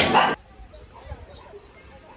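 Voices and metal cutlery clinking on plates, cut off abruptly about a third of a second in. After that comes faint outdoor ambience with a few faint short calls.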